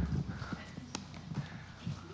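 A pause with a few soft, hollow knocks and one sharp click about a second in.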